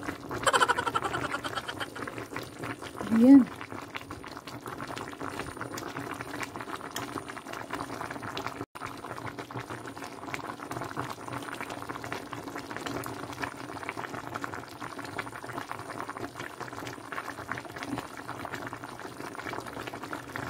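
Pot of salmon sinigang (tamarind broth) boiling steadily: a dense, even bubbling crackle. A short voiced exclamation about three seconds in is the loudest moment.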